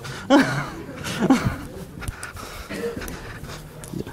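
Indistinct voices and brief chuckling from a lecture-hall audience, with a few light clicks and knocks of a handheld microphone being passed and handled.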